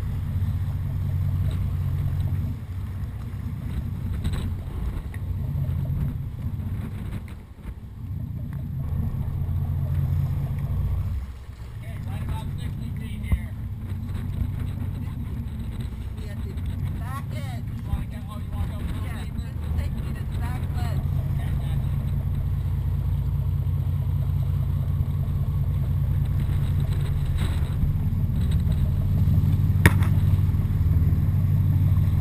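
Dive boat's engine running steadily under way, a low drone that drops away briefly about 7 and 11 seconds in.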